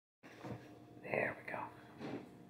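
A woman whispering a few soft syllables, mostly about a second in.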